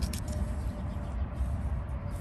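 Steady low background rumble with a faint steady hum, and a few light clicks at the very start.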